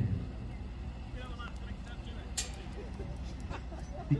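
A classic Mini's engine running at low speed at a distance as the car moves slowly, under faint voices from the crowd. There is one sharp click a little past halfway.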